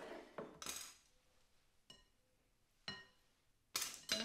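Kitchen utensils working in a glass mixing bowl of thick salad: a scrape, then two light clinks against the glass that ring briefly, and a louder scrape near the end.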